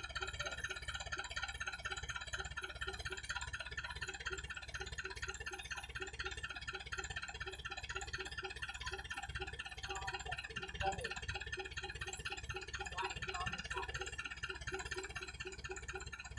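Engine of a tracked rice-carrying vehicle running steadily at idle, an even pulsing hum.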